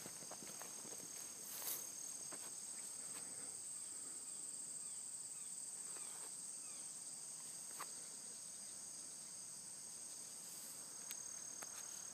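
Faint, steady, high-pitched chorus of crickets trilling, with a few faint clicks.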